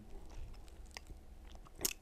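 Quiet room tone with a few faint clicks, and a sharper click near the end.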